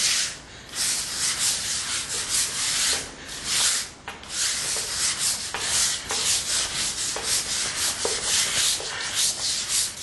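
Stiff hand brush scrubbing a hard floor in quick back-and-forth strokes, about two or three a second, with a brief pause a few seconds in.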